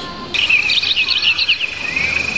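Recorded jungle-style birdsong and a high, steady insect trill from the show's soundtrack, played over loudspeakers. It starts suddenly about a third of a second in, with quick chirps over the trill and a rising call near the end.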